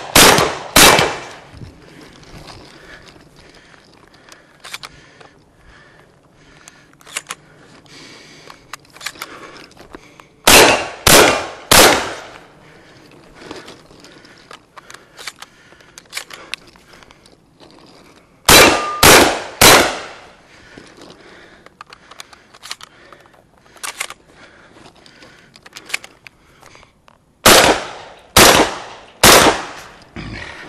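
Shotgun fired in quick strings of two to three shots, each about half a second apart, with a pause of several seconds between strings. Fainter clicks and knocks fill the gaps between the strings.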